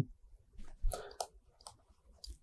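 A few faint, separate light clicks of a stylus tapping and stroking on a tablet screen while writing.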